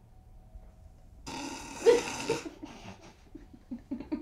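A man breaking into laughter: a sudden breathy burst about a second in, then short broken chuckling breaths.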